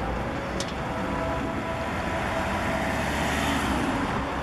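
Road traffic at a city junction: car and truck engines running and tyre noise, swelling as a car passes close near the end. A brief high click about half a second in.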